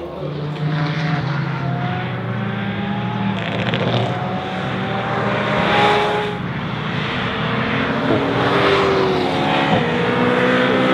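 Porsche 911 GT3 RS sports cars' naturally aspirated flat-six engines running hard on a race track, the engine note climbing steadily, then falling back about six seconds in and again near the end, as at an upshift or lift-off.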